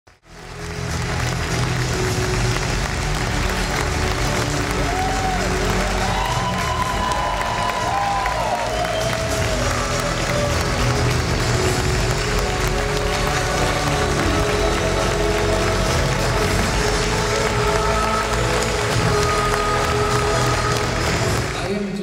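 Audience applause mixed with loud music that has a steady bass.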